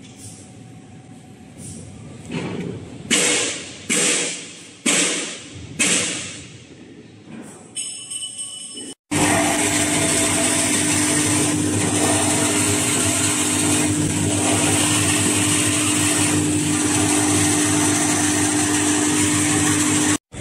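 Hand towel production line machinery running loud and steady, with a constant mid-pitched hum. Before it, in the first half, a quieter stretch holds about five short noise bursts roughly a second apart, each swelling and then dying away.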